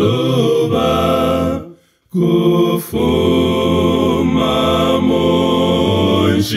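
A Zambian gospel hymn sung a cappella in four-part male harmony by one singer multitracked on all four voices. The chords are held and sustained, break off together into a short rest about two seconds in, and then the voices come back in.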